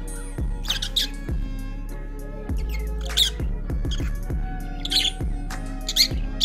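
Background music with a steady bass line, over shrill squawks and chirps from caged small parrots, several short sharp calls breaking in, the loudest a little after three seconds and around five seconds.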